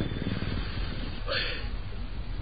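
A pause between lines of a storyteller's narration: the steady low hiss and hum of an old studio recording, with a faint breath about one and a half seconds in.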